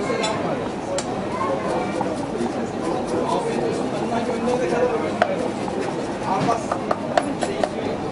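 Kitchen knife chopping red onion on a wooden cutting board: sharp knife strikes, a few early on and then a quick run of louder strikes in the last two seconds, over a background of people chattering.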